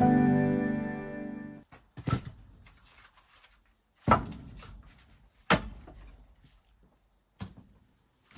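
Background music fading out, then split firewood logs being set down onto a stack: four separate wooden knocks, one every second and a half to two seconds.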